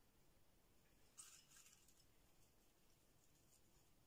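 Near silence, with a faint, brief rustle about a second in and a few light ticks as toasted flaked almonds are picked up and sprinkled by hand onto a cream-topped cake.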